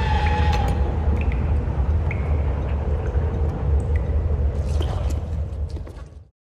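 Deep, steady low rumble of a cinematic trailer drone, with a few faint ticks and short faint tones above it, fading near the end.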